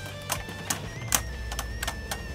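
Two Beyblade Burst spinning tops, Cho-Z Valkyrie and Dread Hades, clicking and clattering against each other and the plastic stadium floor in irregular sharp ticks, about six in two seconds. Faint background music runs underneath.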